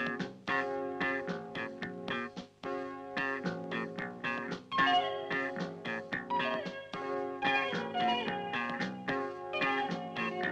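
Background instrumental music: a quick, busy run of plucked-string notes.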